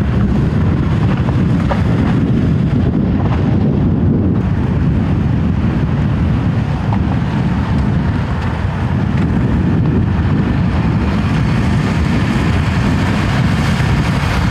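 Steady rumble of wind on the microphone mixed with the running of cars and a Volkswagen minibus driving along a potholed road.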